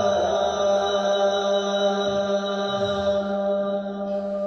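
A man's voice in melodic Quranic ruqyah recitation, holding one long steady note that begins to fade near the end.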